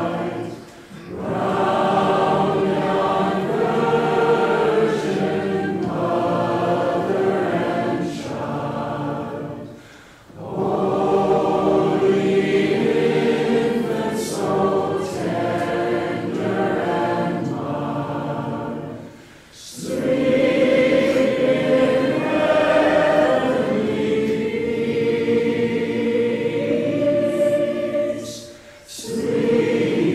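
Many voices singing a slow hymn together in long held phrases, with a brief pause for breath about every nine seconds.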